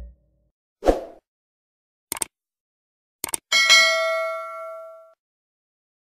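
Subscribe-button animation sound effect: a soft thump about a second in, a sharp mouse click, a quick double click, then a bright bell ding that rings out and fades over about a second and a half.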